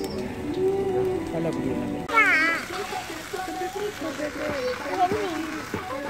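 Music with a held, singing melody for about two seconds, then a sudden change to people talking with a child's high, wavering voice.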